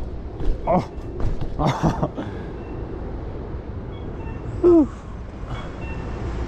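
BMX bike tyres rolling over concrete paving, a steady low rumble mixed with wind on the body-worn camera's microphone. Short voice sounds from the rider break in a few times, the loudest about three-quarters of the way through.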